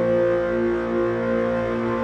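Ambient instrumental background music of held, steady tones.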